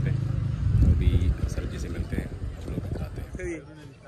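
Men talking, with a vehicle engine running low and steady underneath through the first half.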